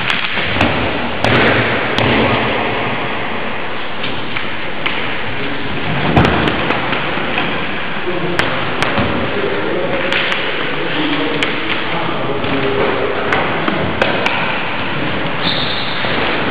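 Scattered knocks and thuds from wrestlers moving on gym floor mats and stepping onto a wooden vaulting box, over a steady loud hiss with faint voices in the background.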